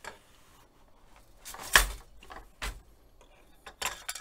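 Wooden floor loom being worked: three hard wooden knocks as the treadles are changed and the beater is brought against the stick to lock it in, the loudest a little under two seconds in.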